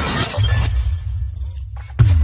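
Synthetic intro sound effects: a glassy, shattering crackle at the start that fades, under a deep bass drone that comes in about half a second in. A heavy hit lands right at the end.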